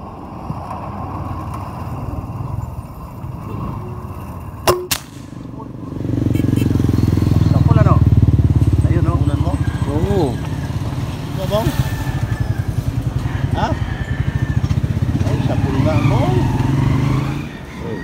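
A single sharp rifle shot about five seconds in. Then a motorcycle engine runs close by, a loud, fast-pulsing low rumble that starts about six seconds in and drops away shortly before the end.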